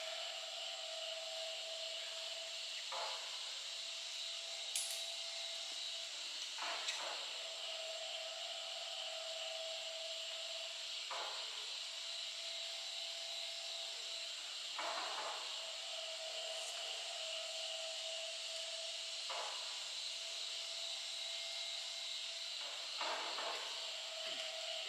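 Steady high-pitched drone of insects in a summer forest. A short sound comes every three to four seconds.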